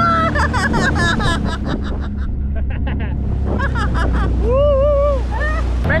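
Sea-Doo jet ski engine running at low speed, a steady low hum, with water washing along the hull and voices calling out over it.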